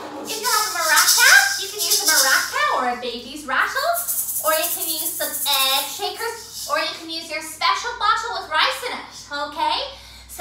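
A pair of maracas shaken in a quick rattle for the first couple of seconds, then more lightly, under a woman's animated talking voice.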